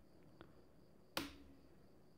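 A plastic rocker switch on a wall socket board clicking on once, sharply, about a second in, with a short ringing tail: the switch that lights the test bulb. A faint tap comes before it.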